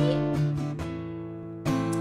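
Acoustic guitar strummed: four strums about a second and a half apart at most, each chord left ringing between strokes.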